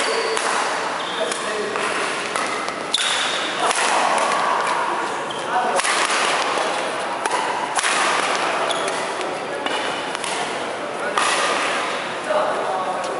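Badminton rally: sharp cracks of rackets striking the shuttlecock every second or two, ringing in a large gym.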